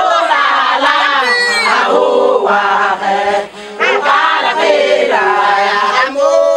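A group of women singing a chant together in loud, overlapping voices, with handclaps.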